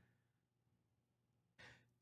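Near silence, with one faint short breath about a second and a half in.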